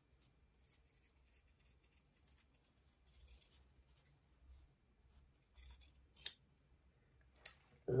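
Scissors snipping the corners off a stitched cotton collar seam to reduce bulk: a few short, faint snips, mostly in the second half.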